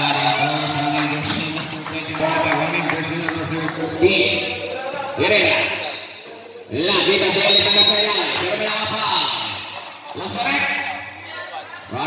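A basketball bouncing and being dribbled on a concrete court in a large hall, with sharp knocks and echo. Voices call out over the play several times, loudest between about 7 and 9 seconds.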